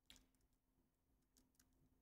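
Near silence: room tone with a faint steady hum and a few very faint clicks.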